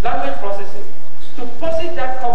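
A man speaking, delivering a lecture as a monologue.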